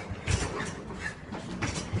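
Metal shopping trolley rattling and clattering, with a few irregular knocks.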